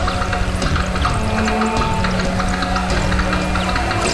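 Experimental electronic noise music from a live synth set: a steady low drone under a dense, noisy texture of short crackles.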